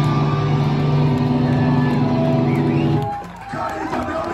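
A live punk band's distorted electric guitars and bass holding one sustained chord that rings steadily, then cutting off abruptly about three seconds in, leaving crowd voices from the club.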